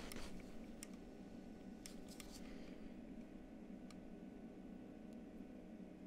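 Near quiet: a faint steady background hum with a few soft, brief clicks.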